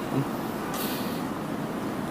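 Steady city street traffic noise, with a brief hiss just under a second in.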